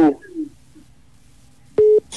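A single short, loud telephone-line beep near the end, one steady tone after a low lull.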